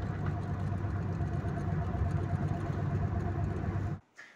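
Steady low rumble of a car heard from inside the cabin, with a faint steady whine over it; it cuts off suddenly at the end.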